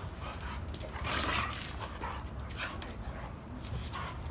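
Two dogs play-wrestling: scuffling and rough, breathy dog noises, loudest a little after a second in.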